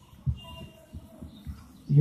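A pause in speech filled by a few soft, low thumps from a handheld microphone being handled, over faint background sound.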